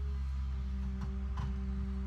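L&T-Komatsu PC200 crawler excavator's diesel engine running steadily under digging load with a constant whine, as the bucket works into a rocky bank; a couple of sharp ticks of rock about a second in.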